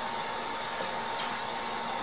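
Steady rushing background noise with faint steady high tones running under it, even in level throughout, with no distinct knock or handling sound standing out.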